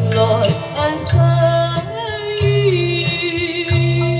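A woman singing a Chinese song into a microphone over a karaoke backing track with a steady bass beat. She holds a long, wavering note through the second half.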